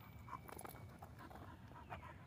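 Faint outdoor background noise with a low rumble and a few soft, scattered clicks.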